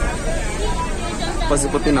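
Passengers' voices and chatter inside a moving bus cabin, over the steady low rumble of the bus.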